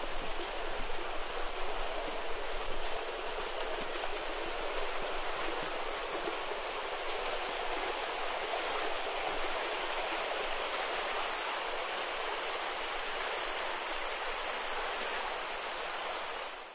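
Steady rush of water flowing along a narrow stone channel beside a cobbled street.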